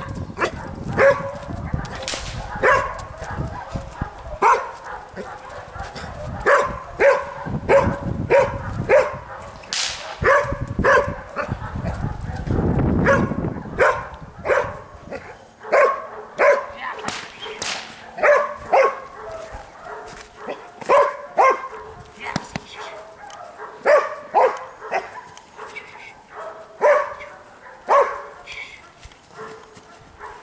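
A young Belgian Malinois barking repeatedly in quick runs of sharp barks at the helper during protection training.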